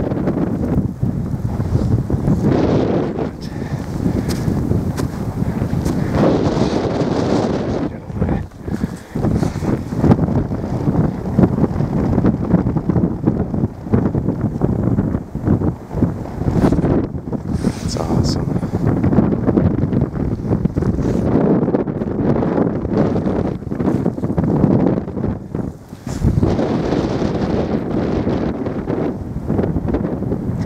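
Strong wind buffeting the camera microphone in gusts, a loud low rumble that briefly drops away a few times.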